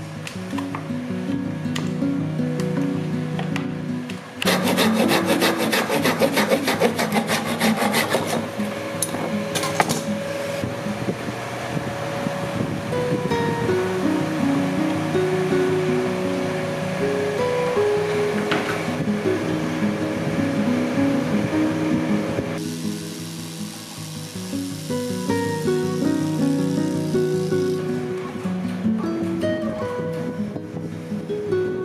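Background music, with a few seconds of rapid, evenly repeated scraping strokes of a hand tool working bamboo, starting about four seconds in and stopping suddenly about eight seconds in.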